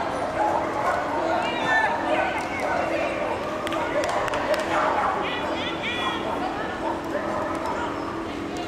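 Dog barking several times in short calls over the chatter of people, with a steady hum.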